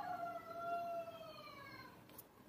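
A faint pitched wail, one long tone with overtones that slowly falls in pitch for about two seconds and then fades, like a far-off siren.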